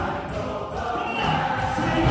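Large gospel mass choir singing with piano accompaniment, a little softer through the middle and swelling again near the end.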